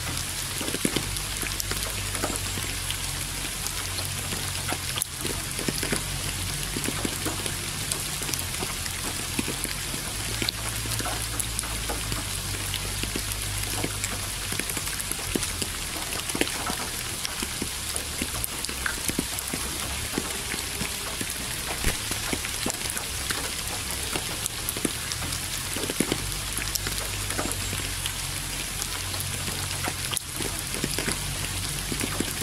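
Steady rain, with many separate drops ticking on a hard surface over an even hiss. A low steady rumble sits underneath.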